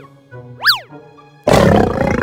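Children's cartoon background music with a quick whistle-like sound effect that rises and falls in pitch, then a sudden loud lion roar sound effect about a second and a half in.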